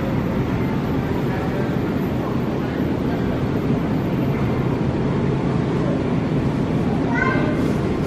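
Supermarket background noise: a steady low hum and rumble with a faint murmur of voices, and a short voice about seven seconds in.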